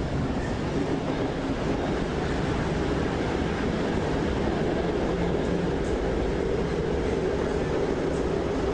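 A train in motion, heard as a steady low running noise of wheels on the track.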